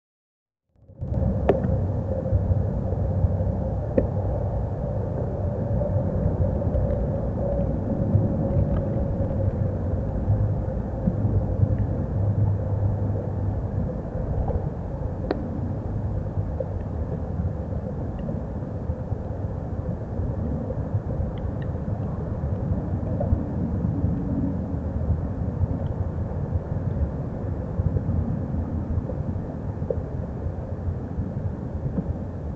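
Steady low outdoor rumble that starts about a second in, with a few faint, short high ticks scattered through it.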